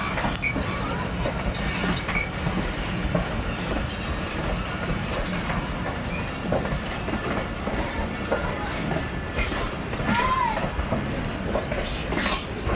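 Passenger coaches of a Pakistan Railways express rolling past, wheels clacking over the rail joints, with a short wheel squeal about ten seconds in.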